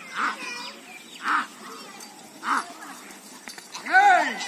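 Handlers' short, sharp calls driving a yoked pair of bullocks, three of them about a second apart, with a louder drawn-out shout starting right at the end.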